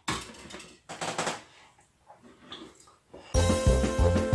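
Light knocks and handling sounds of a plastic toaster being moved on a kitchen worktop, then background music with a steady, regular bass beat starts suddenly about three seconds in and is much louder.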